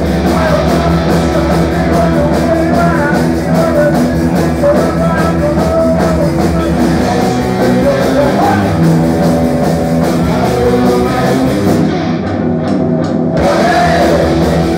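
A rock band playing live: electric guitars, bass and a drum kit with a singer. Near the end the cymbals and high end drop out for about a second and a half, then the full band comes back in.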